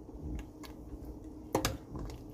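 Thick walnut and pomegranate-molasses stew simmering in a pot: scattered sharp pops of bubbles bursting, the loudest near the end, over a low steady hum.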